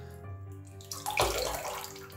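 Water sloshing as a shaving brush is worked in a sink basin of water, with a louder splash a little over a second in.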